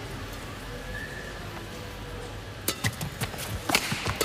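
Low, steady arena ambience, then about two and a half seconds in a rally starts: several sharp racket strikes on a badminton shuttlecock in quick succession, opening with a flick serve.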